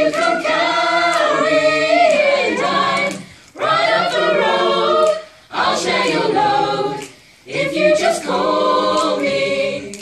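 Mixed choir of men's and women's voices singing a cappella, in four sung phrases with short breaks between them.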